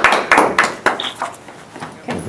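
A small group of people clapping in irregular claps, dying away about a second in.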